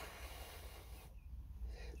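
Soft breath noise, a breath out lasting about a second, then a fainter one near the end, over a low steady hum.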